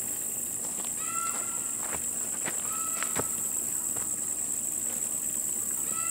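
Steady high-pitched drone of insects in a summer weed field. Over it come a few soft rustles and footsteps of someone moving through tall weeds, and two short chirps about one and three seconds in.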